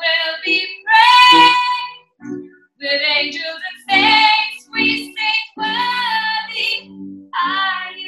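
A woman singing a worship song to her own piano accompaniment, in a string of short phrases with brief breaths between them.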